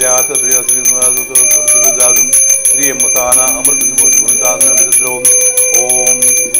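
A puja hand bell rung rapidly and steadily through an aarti, its high ringing tone running under voices singing the aarti.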